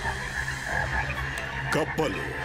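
Many frogs croaking together, a dense steady chorus, as a cartoon sound effect.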